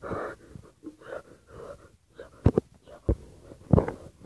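Breathy wheezing sounds close to the microphone, then several dull thumps in the second half from the phone being handled, fingers over the microphone.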